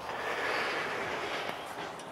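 A passing vehicle's road noise: a steady rush that slowly fades.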